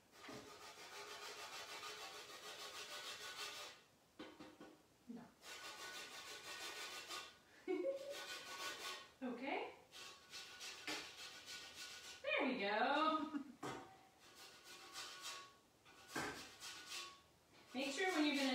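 A lime being zested on a fine grater: runs of rapid scraping strokes, each a couple of seconds long, with short pauses between them.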